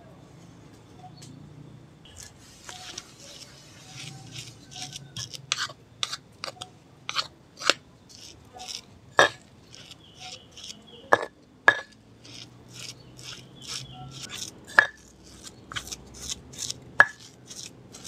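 Stone pestle knocking and scraping in a stone mortar (ulekan and cobek) as grated raw young coconut is mashed into ground chilli spice paste: irregular sharp clicks and scrapes, starting about two seconds in.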